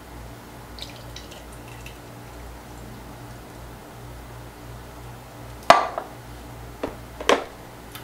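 Canned beans in their liquid sliding and dripping from a tin can into a glass coffee carafe, faint. A sharp knock comes about two-thirds of the way through, and two lighter knocks follow near the end, as glass and can are set down on hard surfaces.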